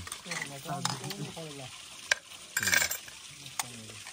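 Close-up wet munching and slurping of a juicy melon slice being bitten and chewed, with a louder bite about two and a half seconds in.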